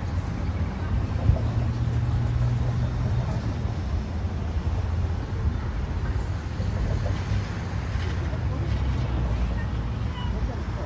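Street traffic: vehicles driving past on the road, a steady low rumble of engines and tyres.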